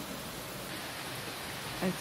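Steady rain falling, an even hiss without a beat.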